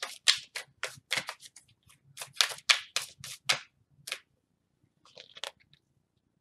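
A deck of tarot cards being shuffled by hand: a quick run of short swishing strokes, about three or four a second, stopping about four seconds in, with a few fainter ones near the end.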